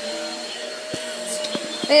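Steady hum of a running motor with a faint high whine, and three light knocks in the second half.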